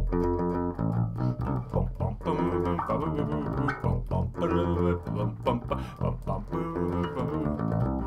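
Electric bass guitar picked with a plectrum, playing a repeating funk riff of short notes and held notes in phrases of about a second and a half.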